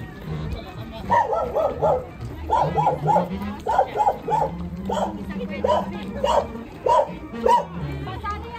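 A dog barking repeatedly: three quick runs of about three barks each, then single barks spaced about a second apart. A held low musical note sounds under the barks.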